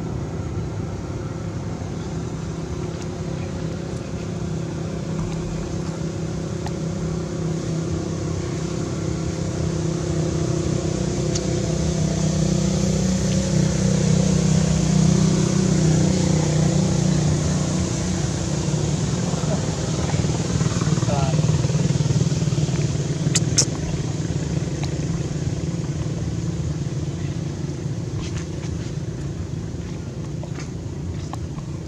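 A motor vehicle's engine running steadily, growing louder toward the middle and fading again as it passes, with a couple of sharp clicks about two-thirds of the way through.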